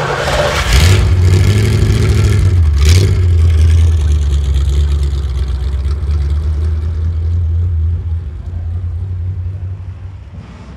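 A vehicle engine: a burst of noise about a second in as it catches, then a deep, steady low-pitched rumble as it runs, with another brief burst about three seconds in, fading slowly toward the end.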